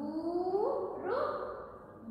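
Only speech: a woman speaking, with her pitch rising through drawn-out words.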